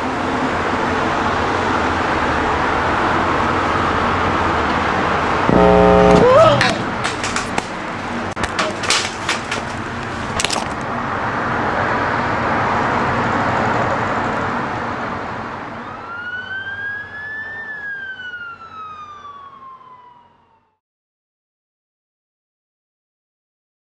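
Steady city traffic noise heard from a balcony above a rail yard, broken about six seconds in by a short, loud horn blast and then a few clicks. Near the end a single siren-like wail rises and then falls while the sound fades out to silence.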